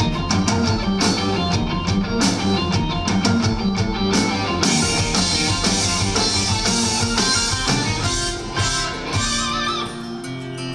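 Live rock band playing an instrumental passage, with electric and acoustic guitars over bass and a steady drum beat. The music eases off and thins out about eight seconds in.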